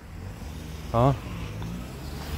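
Low, steady rumble of a car engine running nearby.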